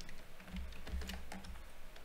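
A few faint, scattered keystrokes on a computer keyboard, over a low hum.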